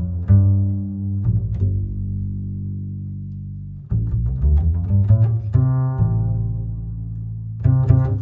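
Live band music led by a bowed violin over low, sustained bass notes. A long held chord fades out from about a second and a half in, then new notes come in near the four-second mark.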